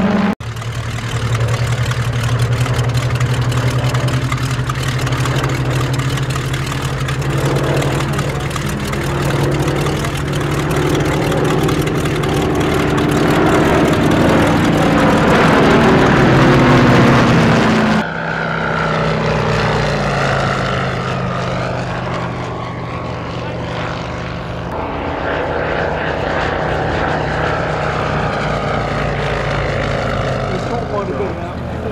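Spitfire and Hurricane fighters flying past together overhead: the steady drone of their Rolls-Royce Merlin V12 engines, the pitch sliding slowly as they pass. About eighteen seconds in the sound breaks off abruptly to a duller, quieter aircraft engine drone.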